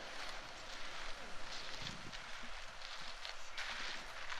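Faint, steady hiss of an outdoor concrete pour, with a few light scrapes about two seconds in and near the end: wet concrete coming off a mixer truck's chute and being raked out.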